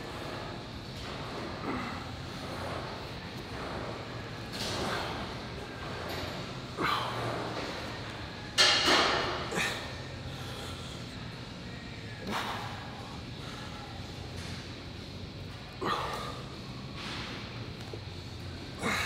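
A man's forceful exhales and strained grunts with each rep of a heavy chest press, one about every two to three seconds, loudest about halfway through.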